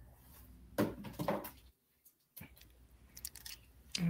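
Faint handling sounds of beads being threaded onto beading wire: light rustling with a louder brief rustle about a second in and a few small clicks near the end.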